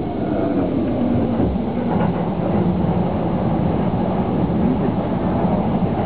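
E231-series electric commuter train heard from inside the car, running with a steady rumble of wheels and motors as it slows alongside a station platform.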